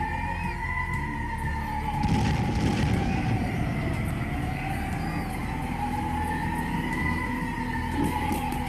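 Rocket warning siren wailing, its pitch slowly rising and falling. About two seconds in comes a loud burst of noise lasting about a second.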